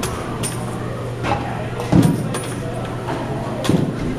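Batting-cage impacts: four sharp knocks and clanks, a second or so apart, the loudest a heavier thud about two seconds in. A steady low hum runs underneath.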